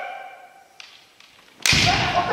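The tail of a long kendo kiai shout fades in the first second, then a couple of light taps. About one and a half seconds in comes a sharp, loud hit: a bamboo shinai striking the kote (padded gauntlet) together with a stamping step on the wooden floor, the debana-kote strike. A fresh kiai shout follows at once.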